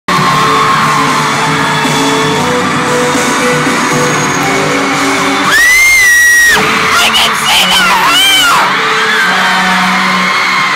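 Live pop concert music in a large arena hall. Loud, high-pitched screaming close to the microphone: one long held scream from about five and a half seconds in, then several shorter wavering screams.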